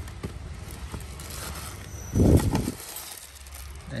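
Handling noise as a plastic-wrapped battery charger is pulled out of a fabric tool bag: light rustling and small clicks, with one brief, loud, muffled bump a little past two seconds in.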